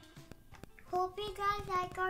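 A young girl's voice holding one long sung note, starting about a second in, after a quieter moment with a few faint clicks.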